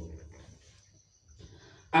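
A pause in a man's talk into a microphone: his voice trails off at the start, then near silence, with his speech starting again right at the end.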